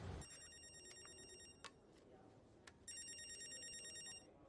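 Mobile phone ringing: two rings of an electronic ringtone, each about a second and a quarter long, with a gap of about a second and a half between them.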